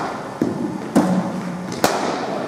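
Three sharp knocks of hard cricket balls striking in an indoor net hall, about half a second to a second apart, each ringing on briefly in the hall.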